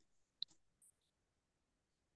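Near silence, with a single short click about half a second in.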